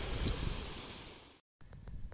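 Small mountain creek running over rocks, with wind buffeting the microphone. The sound fades out about a second and a half in and stops at a cut.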